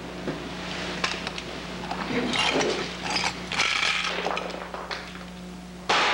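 Clattering, scraping and knocking of objects being handled, in several bursts, over a steady low hum.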